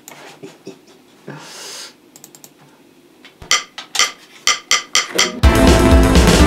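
A man laughs, then a run of sharp, evenly spaced clicks sounds, and about five seconds in a loud, fast backing track with drums starts up.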